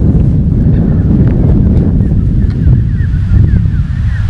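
Wind buffeting the microphone: a loud, steady low rumble, with a few faint high chirps in the middle.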